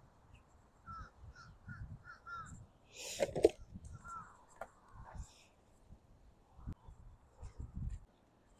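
A bird calling outdoors: a quick run of short notes, then a louder, harsher call about three seconds in. Footsteps on pavement come near the end as someone walks up to the microphone.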